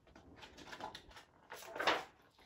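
Paper rustling as a picture book's page is turned, with a louder swish near the end as the page sweeps over.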